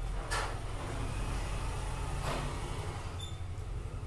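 Steady low background hum with two brief soft swishes, about a third of a second in and a little over two seconds in.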